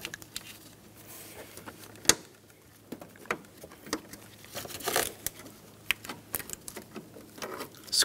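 Hose clamp pliers gripping and squeezing the spring clamp on the upper radiator hose: scattered metal clicks and small knocks with light handling noise, the sharpest click about two seconds in.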